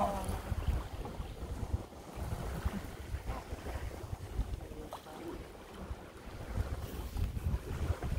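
Wind buffeting the microphone in uneven gusts over the rush of water along an Alberg 30 sailboat's hull as it sails along.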